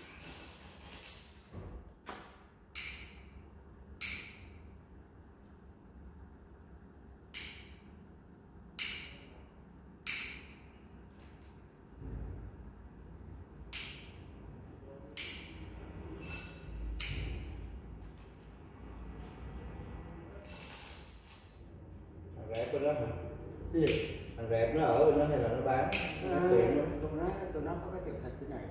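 A high, steady whistle-like electronic tone sounds in three stretches of one to three seconds, with sharp clicks or taps at uneven intervals between them; muffled talk comes in near the end.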